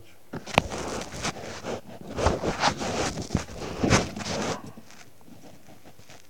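Rustling and scraping as a sweet potato is handled over a plastic bag, with a sharp click about half a second in.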